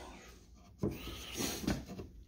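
Wooden box lid being lifted off its freshly cut box: a light wooden knock about a second in, then soft wood-on-wood rubbing and a smaller knock.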